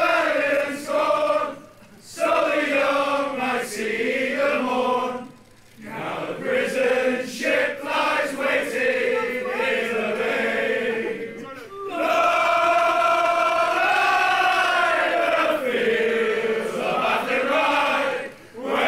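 A group of men singing a song together in unison. Phrases of drawn-out notes are broken by short pauses, with one long held passage about twelve seconds in.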